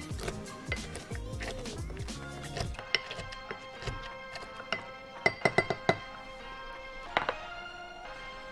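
Wooden muddler lightly pressing cucumber slices in the bottom of a glass mixing glass, with soft thuds, then a series of sharp clinks, four in quick succession about five seconds in and one more near the end. Background music plays throughout.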